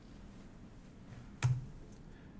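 Quiet room tone, then a single sharp click with a short low thump about a second and a half in.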